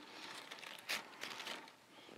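Faint rustling of artificial leaves as a faux greenery stem is bent back by hand, with a brief crackle about a second in.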